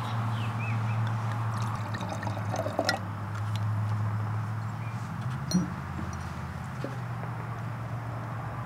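Wine poured from a bottle into a stemmed wine glass, a soft trickle and splash over the first several seconds, over a steady low hum.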